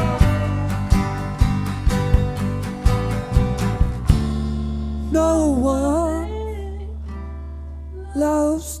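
A live rock band (drum kit, acoustic guitars and electric bass) plays with drums hitting on the beat. About four seconds in, the drums stop and a chord rings on while a man sings a wavering held line that fades near the end.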